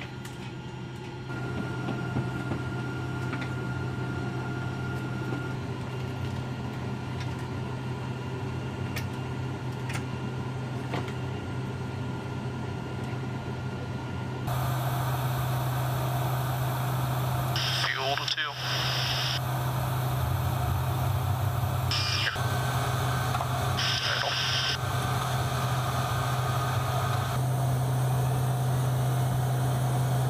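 Steady low drone of a KC-135 Stratotanker's engines and cabin air, heard from inside the aircraft, getting louder about halfway in. In the second half there are a few short bursts of hissing radio or intercom noise.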